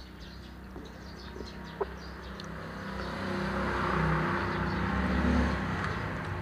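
A passing motor vehicle's engine swells louder through the second half and begins to fade near the end. Before it come small clicks of eating and drinking and a single sharp tap just under two seconds in.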